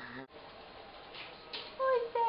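Baby's high-pitched vocalizing, a held squeal that starts near the end. Before it there is low room noise, after an abrupt cut about a quarter second in that ends a lower voice.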